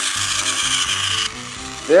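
A battery-powered TOMY toy train's motor and gearbox whirring as it drives up a plastic spiral track. The whirr stops abruptly just over halfway through.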